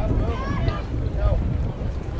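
Wind buffeting the microphone as a steady low rumble, with distant voices of players and spectators calling out over it.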